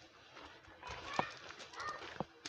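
Footsteps walking on a garden path: a couple of sharp knocks about a second apart, with faint pitched calls in the background.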